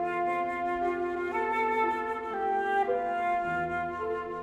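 Concert flute playing a slow lullaby melody in long held notes over soft piano accompaniment. The melody steps up about a second in and comes back down near the end.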